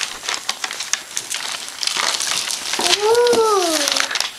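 Shiny gift-wrapping paper crinkling and crackling under a small child's hands as she starts to open a wrapped box. A drawn-out voice sound, rising then falling in pitch, comes near the end.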